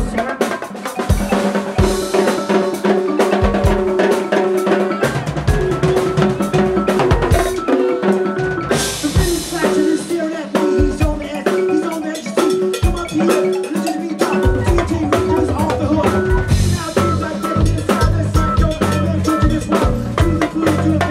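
Live band playing an instrumental passage: vibraphone notes struck with mallets over a busy drum kit, timbales and bongos. A heavy low bass part comes in about two-thirds of the way through.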